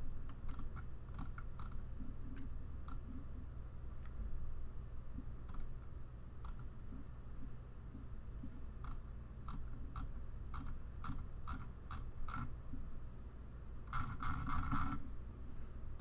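Scattered clicks from a computer mouse and keyboard at a desk, with a quick run of clicks about two seconds before the end, over a steady low hum.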